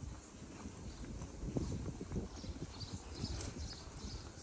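Footsteps of a person walking on pavement while filming, heard on the phone's microphone as irregular low thumps and rumble.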